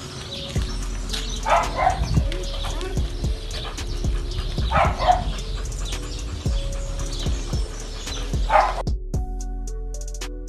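A dog barking three times, a few seconds apart, over background music.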